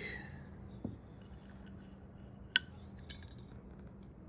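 A single sharp clink against a glass beaker about two and a half seconds in, followed by a few faint light ticks, as small metal test strips are lifted out of the water, over a faint steady hum.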